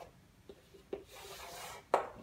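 Chalk scraping along a chalkboard as a line is drawn: a steady rasp lasting about a second, set between a few sharp taps of the chalk on the board, the loudest tap near the end.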